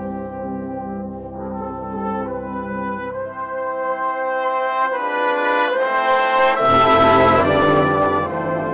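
Salvation Army brass band playing a hymn arrangement in held chords, building to a loud climax about seven seconds in.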